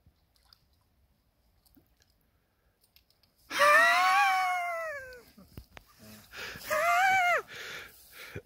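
Near silence, then about three and a half seconds in a long, high-pitched drawn-out vocal sound from a person, rising and then falling in pitch. A shorter, similar call follows near the end.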